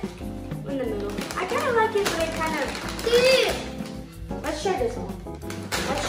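Young children's voices, talking and exclaiming in short bursts, over background music.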